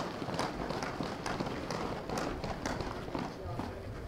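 Footsteps of a person walking across pavement, uneven steps about two a second, over a low murmur of background voices.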